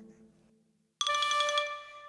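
A short silence, then about a second in an electronic chime sound effect starts suddenly, several steady bell-like tones together that fade out.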